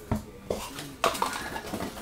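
A stack of baseball cards being handled on a tabletop: a few sharp clicks about half a second apart as the cards are shuffled and tapped, with light rustling between.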